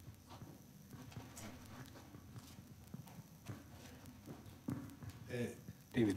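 Faint, scattered hand claps and small knocks as applause dies away, with a brief murmur of voices near the end.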